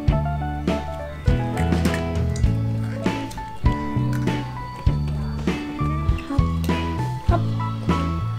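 Background music: an instrumental tune with a steady beat over a bass line.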